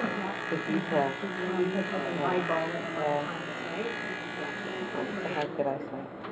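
Corded electric hair clippers running with a steady buzz while cutting hair on a mannequin head, switched off shortly before the end.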